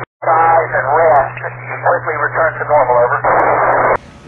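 A man's voice over the ISS amateur radio downlink, narrow and tinny over a steady low hum, cutting out briefly at the start and ending in a stretch of radio hiss.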